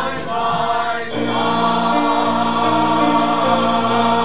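A mixed church choir singing with instrumental accompaniment; about a second in, the music moves to a new, long-held chord.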